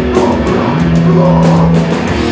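Hardcore punk band playing live and loud: distorted electric guitars, bass and drums. A single note is held steady from under a second in until near the end.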